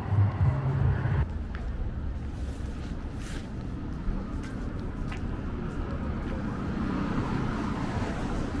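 City street ambience: a steady low rumble of traffic and wind. A deep, stepping bass sound cuts off abruptly about a second in.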